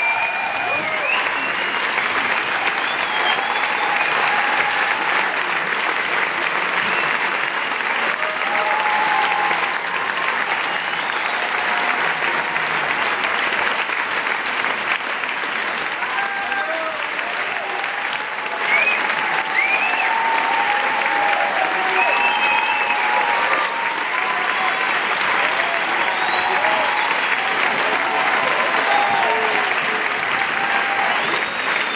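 Concert audience applauding steadily, with cheers and shouts from the crowd rising above the clapping.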